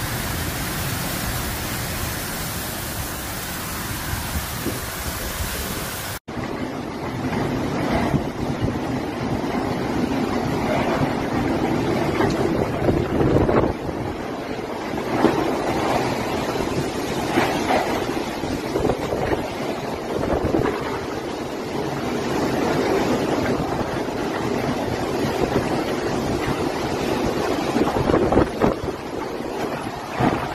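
Heavy rainstorm: a dense, steady rush of rain and wind at first; about six seconds in, after an abrupt cut, strong wind gusting in surges, buffeting the microphone.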